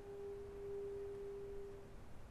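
A single soft, sustained note from a woodwind quintet, a nearly pure tone held steadily and dying away near the end.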